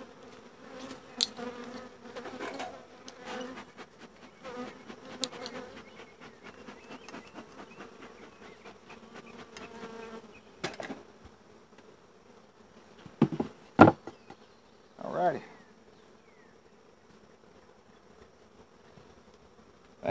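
Honeybees buzzing around an open hive: a steady hum through the first half, then one bee passing close with a rise and fall in pitch. A few sharp knocks around two-thirds of the way through are the loudest sounds.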